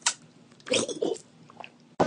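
Wet sucking and slurping mouth sounds from fingers held in the mouth: a sharp smack at the start and a longer, irregular slurp about a second in.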